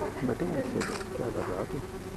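Indistinct voices in the hall over a steady, thin electrical hum.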